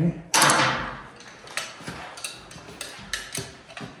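A sharp metallic clatter about a third of a second in, fading over about a second, followed by a string of light metal clicks and taps as a hand tool is picked up and handled at a dirt-bike wheel.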